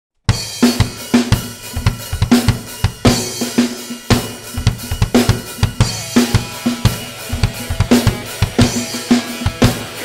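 Nagano Garage Fusion drum kit with Sabian Xs20 cymbals played in a fast, driving rock beat: rapid drum hits and cymbal crashes, starting abruptly just after the start.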